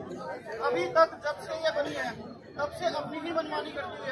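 Speech only: a man speaking to a crowd through a handheld microphone, with crowd chatter.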